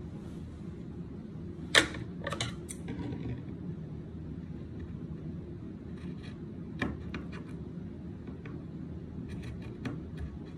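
Scissors snipping through fabric: irregular sharp clicks of the blades closing, the loudest about two seconds in, more around seven seconds and a quick run near the end, over a steady low room hum. The scissors cut poorly, "so messed up" and "crappy" in the words of the man using them.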